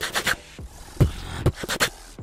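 Beatboxer's mouth sounds, demonstrating the inward drag used to coax out the poh snare. A few short sharp hits, the loudest and deepest about a second in, with a quick pair near the end.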